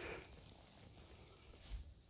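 Faint, steady high-pitched insect chorus, typical of crickets singing in autumn woodland, with low handling rumble and a soft thump near the end.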